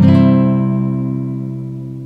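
Intro music: a single guitar chord, strummed once at the start and left to ring, fading slowly.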